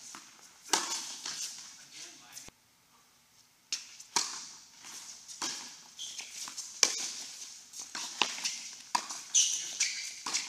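Tennis balls struck by racquets and bouncing on an indoor hard court, a string of sharp pops that each ring on in the hall's echo. A little way in, the sound drops to near silence for about a second, then the strikes resume.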